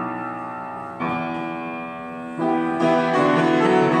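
Solo piano playing: sustained chords, with new ones struck about one second and two and a half seconds in, then a quicker run of notes near the end.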